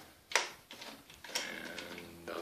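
Horizontal window blinds being handled: a sharp click of the slats about a third of a second in, then a longer, steady-pitched rattle from the tilt mechanism as the slats are turned.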